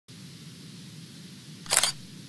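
A low, steady hum, then about 1.7 s in one short, loud camera-shutter sound effect as the intro logo appears.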